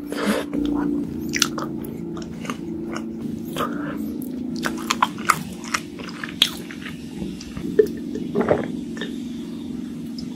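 Close-miked mouth sounds of eating soft cream-filled sponge cake: chewing and biting, with many short sharp clicks and wet smacks scattered through, over a steady low hum.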